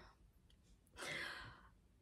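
A woman's sigh: one breathy exhale about a second in, lasting under a second.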